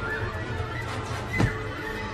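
Tense suspense film score with held tones, cut by a short, sharp, loud accent about one and a half seconds in.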